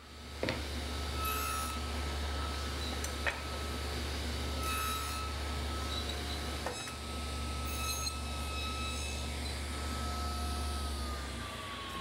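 Delta Unisaw cabinet table saw starting up and running steadily, with its blade set low, making several brief shallow shoulder cuts across teak rails for tenons. Near the end it is switched off and its pitch falls as the blade coasts down.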